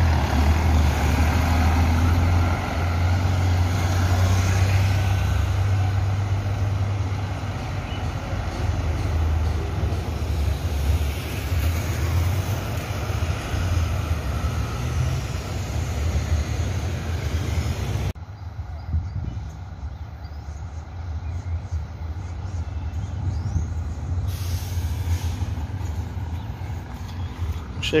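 Scania K420 coach's diesel engine running close by as the bus pulls through the street, a strong low hum at first, then mixed traffic noise. About two-thirds of the way through the sound drops off suddenly to quieter street noise.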